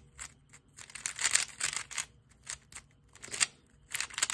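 Moyu WRM V10 3x3 speedcube being turned fast during a solve: bursts of quick plastic clicking and clacking from the layers, with short pauses between bursts. The cube is new and not yet lubricated.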